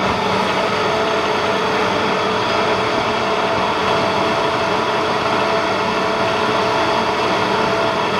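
Bridgeport Series II mill's rear-mounted vertical slotting attachment running, its ram stroking the tool up and down. A steady machine drone with several constant tones.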